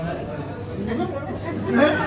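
Several people talking at once: overlapping chatter of voices at the tables in a room, with one voice loudest near the end.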